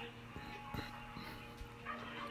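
Faint animal cries with a few soft clicks.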